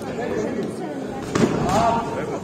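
Spectators talking and calling out in a hall, with one sharp smack of a blow landing in a kickboxing bout about one and a half seconds in, followed by a louder shout.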